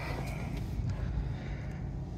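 Alfa Romeo Giulietta engine idling, a steady low hum heard from inside the cabin.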